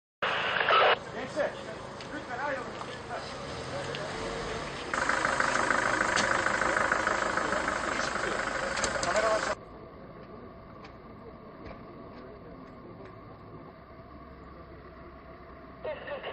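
Indistinct voices over outdoor background noise, in several short edited segments that change level suddenly, the loudest about a third of the way in and the quietest in the last third.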